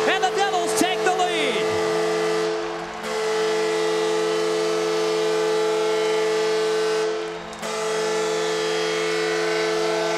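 Arena goal horn signalling a home-team goal, a steady chord sounded in three long blasts that break briefly about three and seven seconds in, over crowd cheering. A few falling whistle-like glides are heard in the first two seconds.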